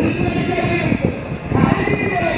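A man's voice preaching in Amharic, a sermon to a large crowd.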